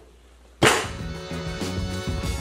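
One sudden sharp crack and clatter about half a second in, as a thin Quikrete concrete slab snaps under a stack of iron weight plates and a man's weight, the plates dropping onto it. Background music runs underneath.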